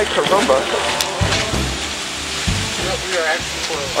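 Short bursts of people's voices, brief talk and laughter, over a steady rushing background noise.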